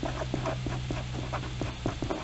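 Felt-tip pen writing on a paper worksheet: a quick, irregular series of small tapping and scratching strokes as letters are formed, over a faint steady low hum.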